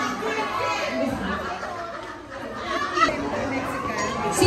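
Chatter of a group of children and teenagers talking over one another.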